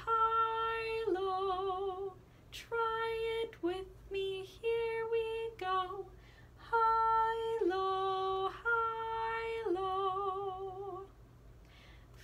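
A woman singing unaccompanied, alternating a held high note with a lower one, the words 'high, low', about five times over; the lower notes waver with vibrato.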